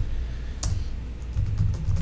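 Light clicking with one sharp click about half a second in, over a low steady hum.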